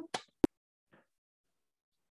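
A single sharp click a little under half a second in, after the last word fades, with a faint short tick about half a second later; otherwise near silence.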